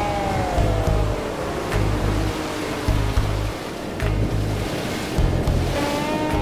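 Soundtrack music with a pulsing bass. Its melody glides downward and fades in the first half while the rush of breaking surf swells through the middle, and the melody comes back near the end.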